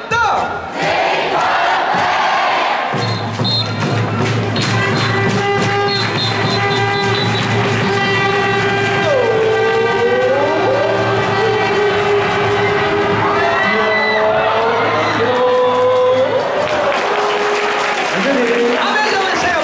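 Stadium crowd of thousands cheering and singing along with amplified cheer music at a baseball game. The music comes in about three seconds in with a steady low tone under it and carries on until near the end.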